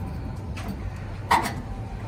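Low wind rumble on the microphone, with one short click a little past halfway from a brass propane hose fitting being screwed by hand into a griddle's gas inlet.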